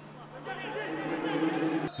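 Faint men's voices calling out on a football pitch, with the low murmur of the field sound and no crowd noise.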